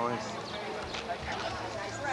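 Indistinct voices of several people talking at once, with scattered light taps such as footsteps.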